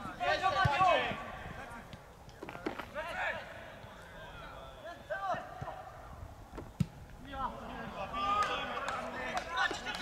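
Football players shouting and calling to each other across an open pitch, loudest just after the start and again near the end. A few sharp thuds of the ball being kicked come through, the sharpest about seven seconds in.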